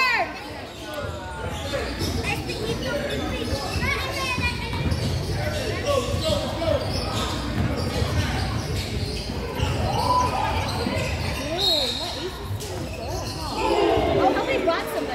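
A basketball bouncing on a hardwood gym floor, with scattered voices of players and spectators sounding through a large, reverberant gymnasium.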